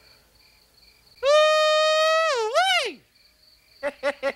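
A long, loud whooping call holds one pitch for about a second, wavers, then slides steeply down, over a steady high chirping of crickets. Near the end come four short, quick vocal bursts.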